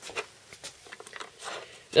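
A few faint clicks and light knocks as the Spyderco Sharpmaker's triangular ceramic stones are handled and lifted out of its plastic base.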